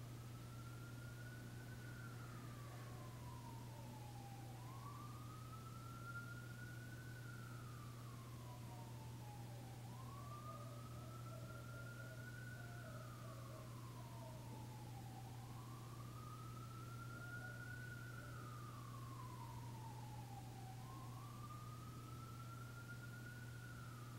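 A faint siren wailing, its pitch rising and then falling slowly about once every five seconds, over a steady low hum.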